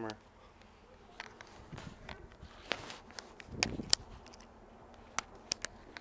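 A scatter of sharp clicks and knocks amid rustling handling noise, the loudest few about two-thirds of the way through and a quick cluster near the end.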